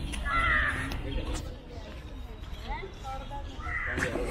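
A crow cawing, once just after the start and again near the end, over background chatter of people's voices.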